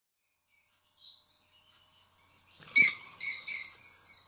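Small pet parrot chirping: a few faint chirps early, then three loud chirps in quick succession starting a little under three seconds in.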